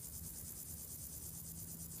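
Many male grasshoppers chirping together in dry grass and scrub, a steady high-pitched chirring.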